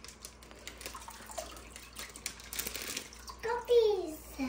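Water poured from a plastic bag into an aquarium, trickling and splashing into the tank, with the bag crinkling. A child's voice is heard briefly near the end.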